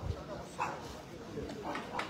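Indistinct crowd voices, with two short bark-like calls, one about half a second in and one near the end.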